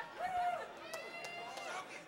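Indistinct voices calling out in drawn-out, arching shouts, with a few sharp clicks about a second in.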